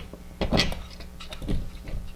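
A few short knocks and clinks of metal hardware as bolts are hand-tightened through a metal TV-mount wall plate into drywall anchors. The loudest comes about half a second in and another about a second and a half in, over a faint steady hum.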